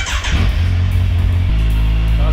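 Yamaha FZ1N's inline-four engine starting up: a sudden loud burst as it fires, then settling into a steady idle about one and a half seconds in.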